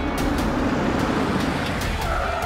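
A car driving up, a loud rush of engine and tyre noise that swells in the middle, with percussive hits from a dramatic background score under it.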